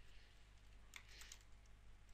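Near silence: a faint low hum with a few soft, scattered clicks.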